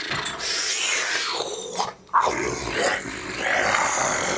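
Rough, breathy, growl-like vocal sounds in a few bursts, with a short break about two seconds in.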